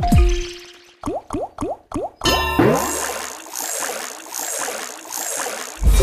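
Online video slot game sound effects: a deep thump as the reels set off, a quick run of short rising bloops as the reels stop one after another, then a rising sweep into a bright, busy jingle that pulses gently, with another deep thump near the end.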